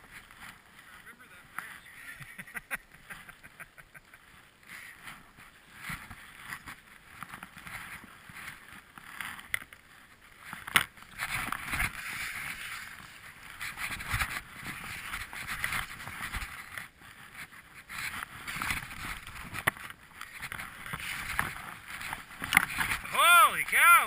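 Skis hissing through deep powder snow, swelling and fading with each turn, with one sharp click about eleven seconds in.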